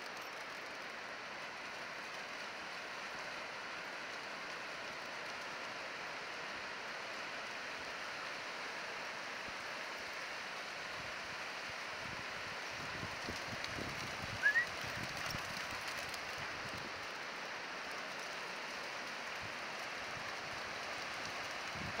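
Steady hiss of surf washing onto a flat sandy beach. A brief high rising chirp about two-thirds of the way through.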